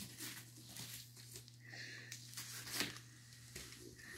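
Faint scratching and rustling with scattered light ticks as a cat paws at a cane and its strap on a woven floor mat, with one sharper tick about three-quarters of the way through. A low steady hum sits underneath.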